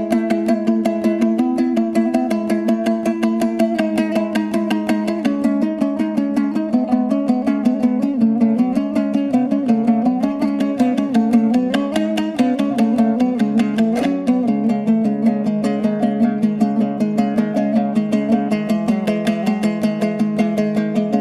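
Kazakh dombra playing a kui, a fast instrumental piece. The strumming is rapid and even, and a steady low note runs under a moving melody.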